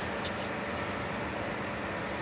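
Steady background hiss with a faint low hum, broken by a few brief faint rustles.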